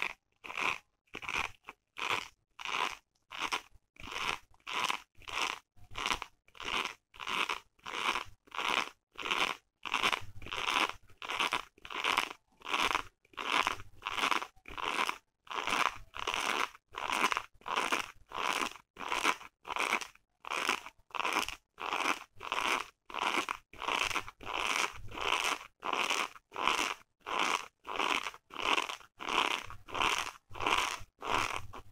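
Long fingernails scratching a woven striped fabric pouch in short, even strokes, about three every two seconds.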